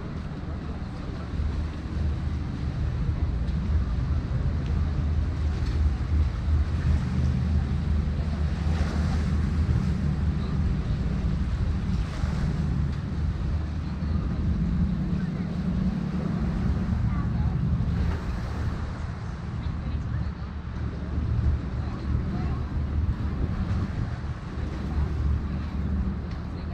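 Wind buffeting the camera's microphone: a loud, gusting low rumble that rises and falls throughout, with voices of people nearby underneath.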